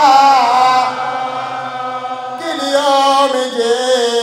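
A man chanting a mournful elegy into a microphone, his single amplified voice holding long, wavering notes. The phrase breaks off a little past halfway, and a new one begins on a rising note.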